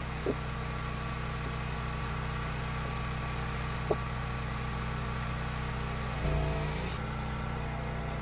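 Small gas engine of a Wolfe Ridge 28 Pro hydraulic log splitter running steadily, with two light knocks early and midway. About six seconds in the engine note shifts and grows louder for under a second.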